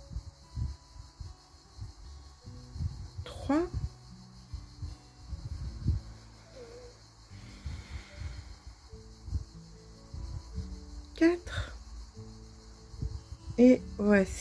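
Quiet background music of sustained soft notes, with faint low bumps and rubbing from hands working a crochet hook and thread close to the microphone.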